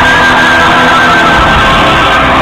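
Folk-metal band playing live through a big PA, loud and continuous, with a held high melody line over the band, heard from among the audience in a large hall.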